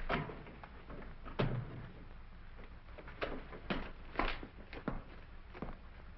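A door being opened, with a heavy thump about a second and a half in, followed by a series of lighter knocks and steps about half a second apart, over the steady low hum of an old film soundtrack.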